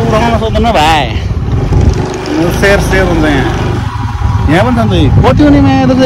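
Men's voices talking and calling out over the steady running of a motorcycle engine, with rushing wind noise from riding.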